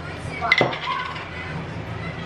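A hard object clinks a few times in quick succession about half a second in, with a short ring after it, over low room noise.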